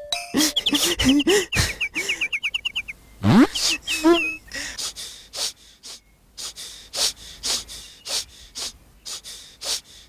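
Cartoon sound effects: short up-and-down pitch swoops over a run of fast, bird-like chirps, then a quick rising whistle about three seconds in. After that comes a string of short swishes about every half second.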